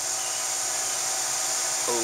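Steady background noise: an even hiss with a faint hum beneath it, unchanging and with no distinct events; a brief start of a voice at the very end.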